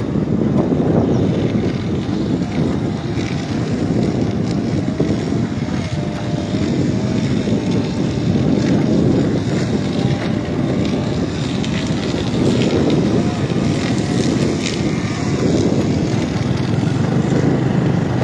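Motorbike riding along a rough dirt track: a steady engine drone mixed with wind rumble on the phone's microphone.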